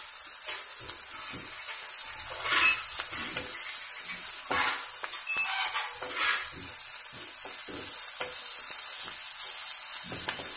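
Sliced onions and green chillies sizzling in hot oil in a kadai, with a spatula stirring and scraping them against the pan in irregular strokes, a few of them louder.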